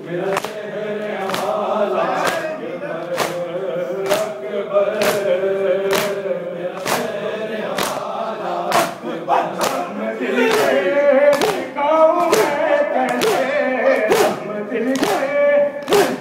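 A group of men chanting a noha lament in unison while doing matam, beating their chests with their hands. A sharp slap lands about once a second in time with the chant, and the chanting grows livelier in the second half.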